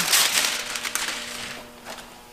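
Window tint film crinkling and rustling as it is worked against a wet window, loudest in the first second and then fading.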